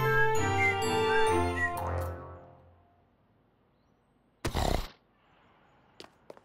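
Bright cartoon music with chiming notes that fades out about two and a half seconds in. After a short hush, one loud rushing burst of about half a second comes near the end.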